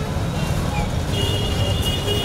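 Road traffic on a busy street: a steady low rumble of vehicle engines, with a thin high steady tone joining about a second in.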